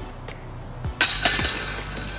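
A disc golf putt hitting the chains of a basket: a sudden bright jangle of metal chains about a second in that rings on for about a second.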